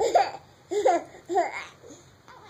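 Young child laughing in three short, high-pitched bursts.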